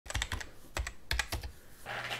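A run of about nine sharp clicks in small, irregular groups, like keys being typed on a keyboard.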